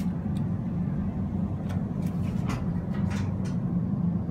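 Hydraulic elevator car in motion: a steady low hum, with a few faint light clicks.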